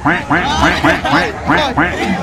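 A man laughing loudly in a quick run of short bursts, about four a second.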